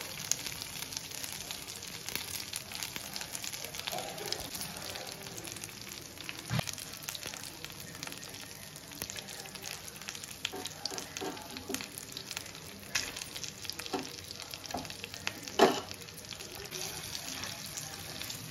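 Halved hard-boiled eggs and masala sizzling steadily in hot oil in a pan, with a metal spoon clicking and knocking against the pan now and then; the sharpest knock comes near the end.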